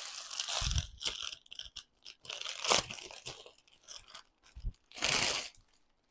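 Clear plastic saree packaging crinkling and rustling in irregular bursts as it is handled and a saree is pulled out of it.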